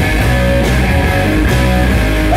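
Live stoner rock band playing loud, with electric bass guitar and guitar.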